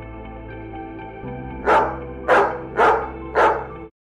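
Soft background music, then a dog barking four times in quick succession, about half a second apart, starting a little before halfway; the barks are much louder than the music.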